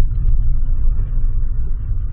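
Low, steady rumble of a car's engine and tyres heard from inside the cabin as the car rolls through a toll booth.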